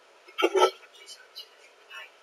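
A single short vocal sound from a child about half a second in, a brief voiced syllable rather than words, followed by a few faint light clicks and taps.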